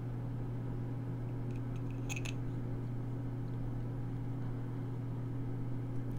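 A steady low hum from a machine or appliance running in the room, with one brief light click about two seconds in.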